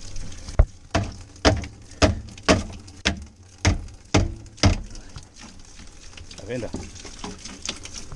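A claw hammer tapping a PVC pipe at the bottom of a plastic water tank: about nine sharp knocks, roughly two a second, which stop about five seconds in.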